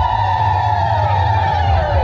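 A loud siren-like wailing tone sliding down in pitch, over a steady low pounding beat.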